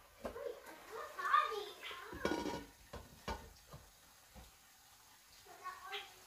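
A glass pot lid being set onto a steel cooking pot, giving a few light knocks and clinks spread over several seconds, with faint voices talking in the background.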